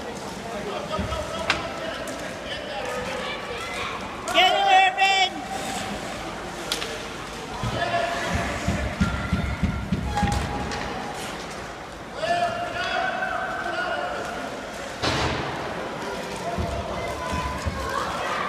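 Shouts and calls from players and spectators echoing in an indoor ice rink during a sled hockey game, loudest about four seconds in and again near the end. These are mixed with occasional sharp knocks and thuds of sticks and puck.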